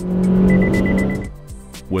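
A rapid series of high beeps from the Chevrolet Sonic's Forward Collision Alert, starting about half a second in and lasting under a second, warning that the car is closing too fast on the vehicle ahead. Under the beeps is loud car noise that swells and fades away.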